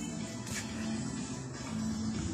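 Music playing steadily, with sustained held notes and no singing heard.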